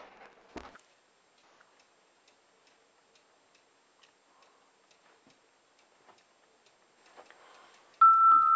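Faint, steady ticking of a wall clock in a quiet room, about two ticks a second. A short knock comes just after the start.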